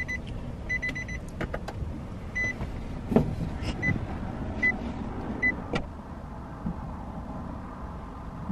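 A low steady vehicle rumble inside a parked car, with about seven short high beeps at irregular intervals over the first six seconds and a few sharp clicks and knocks.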